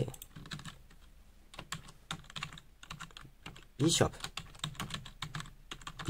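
Typing on a computer keyboard: an irregular run of quick key clicks. A short burst of voice about four seconds in.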